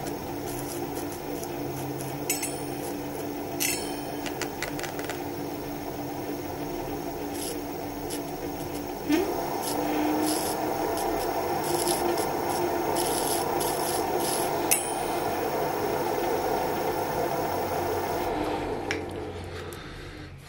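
Electric scooter hub motor spinning its wheel in the air: a steady motor whine with a rubbing scrape and a few clicks. It speeds up about nine seconds in and winds down near the end. Something in the wheel is bent, which the owner suspects comes from the bearings.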